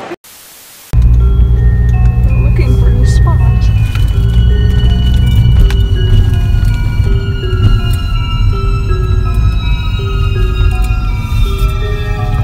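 Background music with a deep, steady bass and a repeating melody of short notes, cutting in suddenly about a second in after a short laugh.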